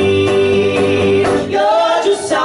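A man and a woman singing a duet in harmony with acoustic guitar, holding one long note, then breaking into a new phrase near the end.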